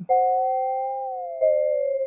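UDO Super 6 synthesizer holding one note with a second tone from LFO 1, running as an audio-rate oscillator in high-frequency tracking mode, sounding above it. About a second in, that second tone glides down toward the note's pitch as the LFO rate is tuned to match it.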